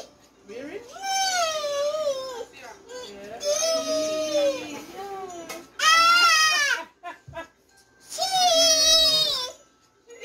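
High-pitched crying: four long, wavering wails of a second or two each, separated by short pauses.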